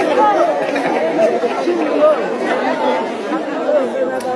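Crowd chatter: many voices talking over one another at once, with no single speaker standing out.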